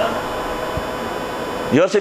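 Steady background hiss with a faint, even hum under it during a pause in a man's amplified speech. His voice comes back near the end.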